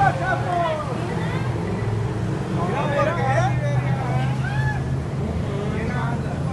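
Indistinct voices of people talking, in two short stretches, over a steady low hum.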